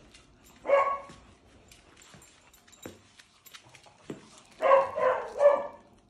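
A dog barking: one bark about a second in, then two more barks close together near the end, an unhappy dog.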